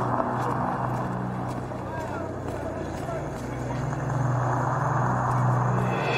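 Busy street background: indistinct chatter of passers-by over a steady low hum.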